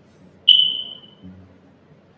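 A single high-pitched ping about half a second in, starting sharply and fading away within about a second.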